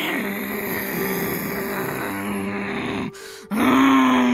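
A person voicing a feral animal, growling and hissing through bared teeth. One long growl breaks off about three seconds in, then a louder one starts and falls in pitch.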